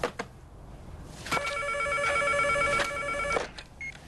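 A telephone ringing once: an electronic ringer's rapidly warbling tone, starting a little over a second in and lasting about two seconds. A short click comes just before, at the very start.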